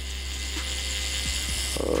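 Tattoo machine buzzing steadily while the needle works on skin.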